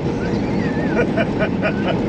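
Steady engine and road noise inside a moving Peterbilt 389 truck cab, with a man laughing in a quick run of chuckles in the second half.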